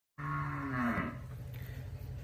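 A cow mooing once: a short moo of under a second that drops a little in pitch at its end.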